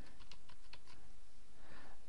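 Computer keyboard being typed on: a short run of light key clicks as a word is keyed in.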